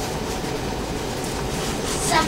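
Steady background room noise, a low rumble with a hiss over it, with no voice and no distinct events.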